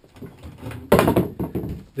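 A sudden clatter about a second in, from a steel Conibear body-grip trap and its chain being handled on a concrete floor, with lighter handling noises before it.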